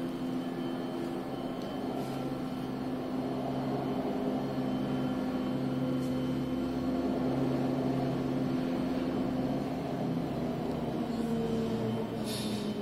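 Steady machinery hum made of several held tones, shifting slightly in pitch near the end.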